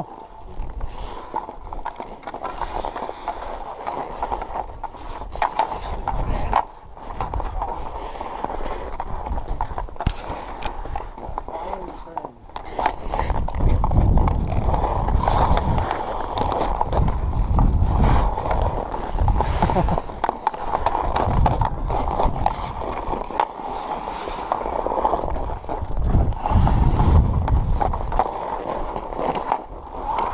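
Hockey skates scraping and carving on outdoor rink ice during a pickup game, with a deep rumble of wind over the moving camera's microphone that swells and fades, loudest in the second half.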